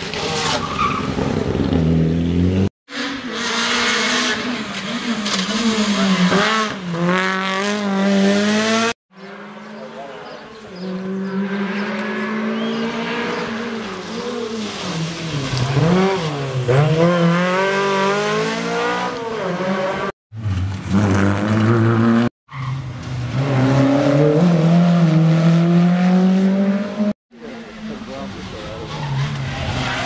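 Rally cars passing one after another through tarmac corners, engines revving hard and rising and falling in pitch through gear changes and throttle lifts. Among them are a Mitsubishi Lancer Evolution, an older Škoda saloon and a Škoda Felicia. The sound breaks off abruptly several times where the clips are joined.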